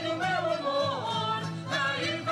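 Portuguese folk group performing a vira dance tune: voices singing over strummed guitars.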